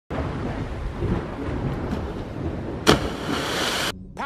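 Steady wind and sea noise, then a sudden sharp splash about three seconds in as a cliff diver hits the water, followed by about a second of hissing spray that cuts off suddenly.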